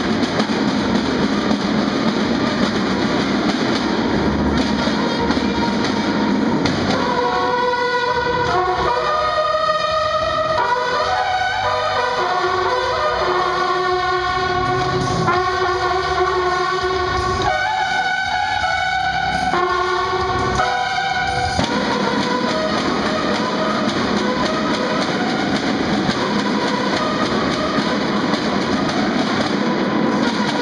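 A bugle and drum band: snare drums beat steadily throughout. From about 7 seconds in to about 21 seconds the bugles play a melody of held notes over the drums, then the drums carry on alone.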